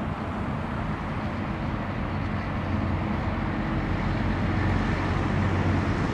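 Outdoor ambience: a steady low engine-like hum over a wash of traffic noise, growing a little louder about halfway through.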